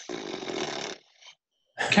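A person's long, breathy exhale into the microphone, a rough, unpitched rush of air that stops about a second in.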